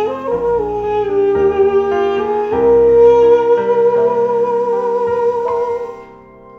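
Armenian duduk playing a slow, sustained melody over piano chords, the chords changing about once a second. The second half is one long held duduk note, and the phrase ends just before the close.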